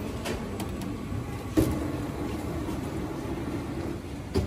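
Self-service bag drop conveyor belt starting with a sharp thump about one and a half seconds in, then running with a steady hum as it carries a suitcase away.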